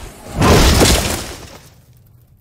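A sudden heavy crash with shattering, breaking debris about half a second in, dying away over about a second into near quiet.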